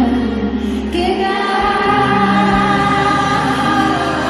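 Live Arabic music: a woman singing with an orchestra behind her, recorded from among the audience. Long held notes; the deep bass drops out about a second in and a new sustained note begins.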